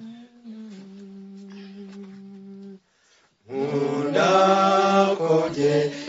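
One voice holds a steady hummed note for about three seconds; after a short pause, a group of voices starts singing a hymn together, unaccompanied and much louder.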